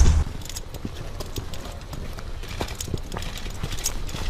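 Footsteps crunching on a stony dirt track, a scatter of short light clicks and crunches, with wind buffeting the microphone that cuts off just after the start.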